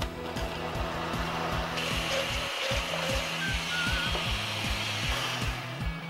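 Countertop blender running, blending a fruit-and-yogurt smoothie, its noise strongest from about two seconds in until near the end. Background music with a steady beat plays under it.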